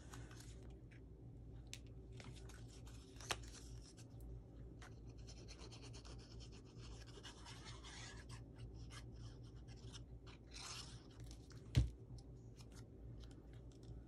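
Quiet handling of cardstock while gluing a paper strip: faint rustling and scraping, with a sharp tap about three seconds in and a louder knock near the end.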